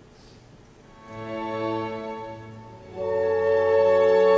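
Classical orchestra with strings playing sustained chords in an accompanied recitative. After a near pause, a held chord enters about a second in, and a louder, fuller chord follows about three seconds in.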